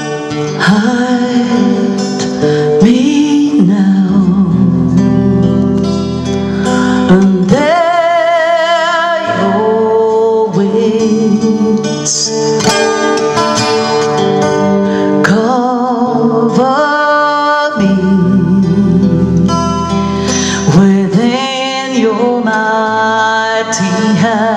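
A woman singing a slow song to her own strummed acoustic-electric guitar, holding long notes with vibrato.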